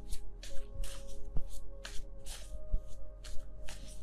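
A deck of tarot cards being shuffled by hand, a rhythmic run of papery swishes about three a second, over soft background music.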